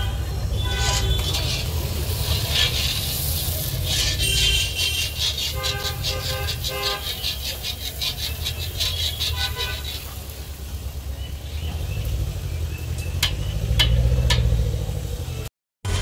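Car horns tooting several times in passing street traffic over a steady low rumble, with the sizzle of a bhatura deep-frying in a wok of hot oil.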